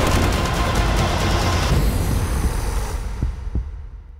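Trailer score and sound design: a loud, dense swell that fades away over the last two seconds, with a few faint low thuds near the end.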